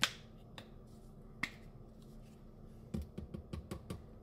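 Plastic seasoning shaker being handled: a couple of soft clicks as it is opened, then a quick run of about eight taps and clicks near the end as it is shaken out over the blender jar.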